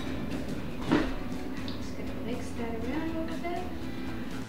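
A metal spoon knocks once against a ceramic bowl about a second in as it starts stirring into flour batter, over a soft background melody.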